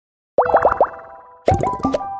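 Cartoon-style sound effects of an animated logo intro: after a brief silence, about four quick rising bloops come about half a second in, then a second run of rising bloops with a sharp noisy pop around a second and a half in.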